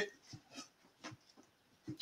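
Near-quiet room with a few faint, short, soft clicks scattered through it.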